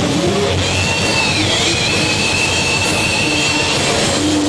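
Heavy metal band playing loudly live, picked up by a camcorder microphone as a dense, distorted wall of sound. A high, held guitar squeal with a slight bend in its pitch rides on top from about a second in until near the end.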